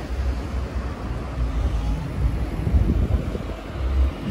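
Wind buffeting the phone's microphone in uneven gusts, heard as a low rumble over a faint outdoor hiss.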